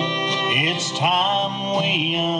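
Live bluegrass band playing an instrumental break: a fiddle carries the melody in long sliding notes over acoustic guitar, mandolin and upright bass.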